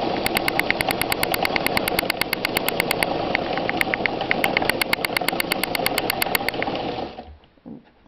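Sewmor class 15 straight-stitch sewing machine running steadily on its electric motor during free-motion stitching with the feed dropped, the needle mechanism clicking rapidly and evenly. It stops about seven seconds in.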